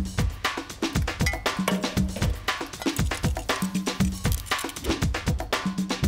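Background music with a quick, steady percussive beat of sharp hits and a short low note about once a second.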